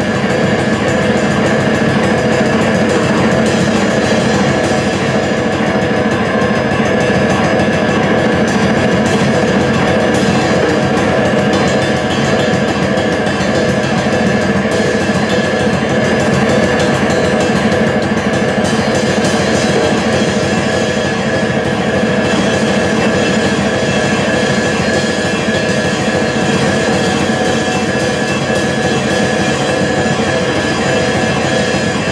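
Drum kit played fast and hard in a dense, unbroken free-form barrage, cymbals ringing continuously under the drum hits, loud and without a pause.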